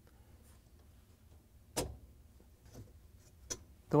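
A sharp plastic click about two seconds in, then a fainter click near the end, in a quiet room: a flathead screwdriver working the release tab as the plastic end cap snaps off a dishwasher's upper-rack rail.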